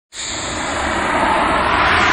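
A rushing whoosh sound effect from an animated logo intro. It starts abruptly and swells steadily louder.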